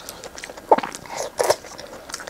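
Close-miked eating: wet chewing and biting on sauce-soaked food, with two louder squelching bites about a second apart.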